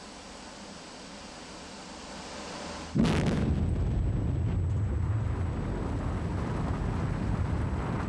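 Ammonium nitrate blasting charges detonating underground in an opal mine, heard through the rock: a sudden muffled blast about three seconds in, followed by a long low rumble.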